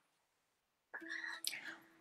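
Near silence for about a second, then a faint, whisper-like voice in the second half.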